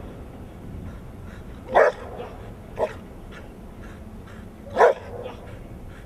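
Large black dog barking: two loud single barks about three seconds apart, with a softer short bark shortly after the first.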